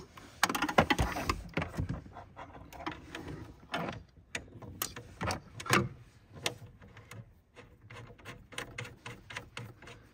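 Irregular small metallic clicks and taps of a cable's ring terminal and nut being fitted by hand onto a terminal of a CTEK D250SE charge controller. The clicks come thickest in the first two seconds, with a louder knock near the middle.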